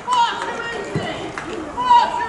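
Men's voices talking near the microphone, with a short loud call just before the end and quieter voices between.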